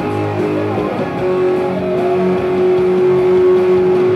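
Gibson Les Paul electric guitar played through a Marshall MG30CFX amplifier: chords for about a second, then one note held steady for about three seconds.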